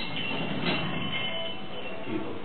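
Ab wheel rolling across the floor during a one-arm rollout: a steady rolling rumble with thin, high squeaky tones over it.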